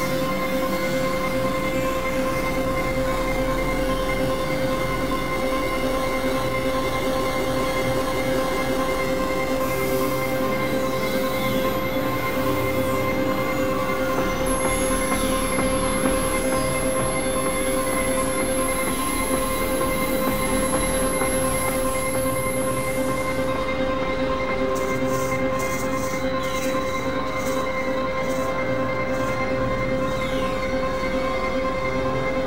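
Industrial synthesizer noise drone: a steady held tone with octaves above it under a dense, harsh wash of noise. A thin high whistle comes in about halfway through and stops about three-quarters of the way in. Near the end the top of the sound breaks into a rapid flutter.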